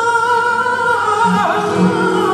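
Male flamenco singer singing a granaína, holding one long note that drops in pitch about one and a half seconds in, over flamenco guitar accompaniment.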